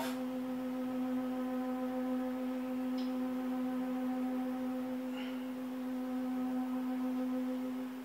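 A steady, unchanging hum with a single low pitch and overtones, as from an electrical or mechanical appliance in the room, with two faint brief ticks about three and five seconds in.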